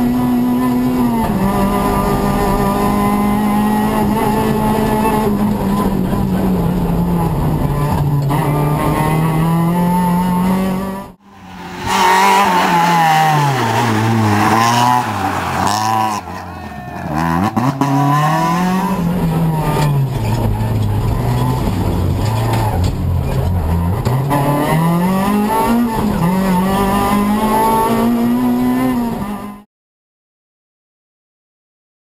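Renault Twingo R2 Evo rally car's 1.6-litre four-cylinder engine at high revs, its pitch climbing through the gears and dropping on the lift and downshifts, again and again. About eleven seconds in, the sound briefly drops away at a cut. It is then heard from outside as the car slides through a hairpin, with the revs dipping and flaring. The sound cuts off abruptly near the end.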